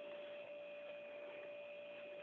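Faint steady electronic hum: one held tone with a thinner, higher whine above it over a low hiss.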